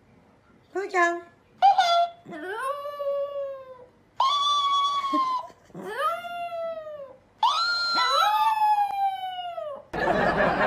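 Chihuahua howling: about six drawn-out calls, the first two short, the later ones longer, each rising and then sliding down in pitch.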